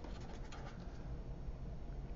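Felt-tip Sharpie marker faintly scratching across paper as a word is written, stopping about a second in, over a steady low room hum.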